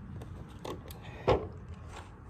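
Footfalls on grass right beside the phone on the ground: a softer step, then one loud, sharp thump about a second in, over a steady low rumble.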